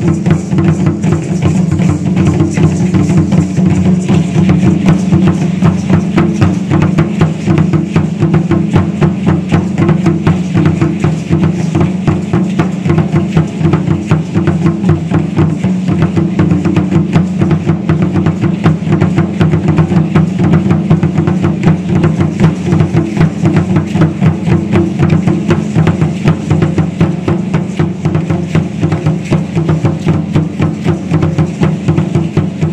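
Danza Azteca drumming on a large upright huehuetl drum: a fast, steady, driving beat of closely spaced strokes that carries the dance.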